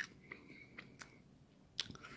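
A person eating close to the microphone: faint chewing with about half a dozen scattered wet mouth clicks.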